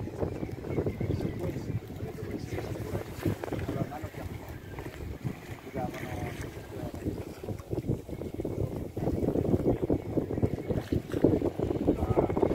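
Wind buffeting the microphone aboard a sailing ketch under way: an uneven, gusting rumble that grows louder from about three-quarters of the way through, with muffled voices now and then.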